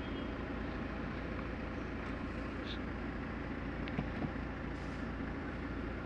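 Steady low hum of a Peugeot car's engine idling in city traffic, heard from inside the cabin, with the muffled noise of traffic outside and a couple of faint ticks partway through.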